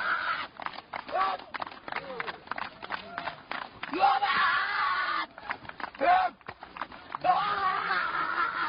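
Raised human voices calling out, with many short clicks and knocks between them.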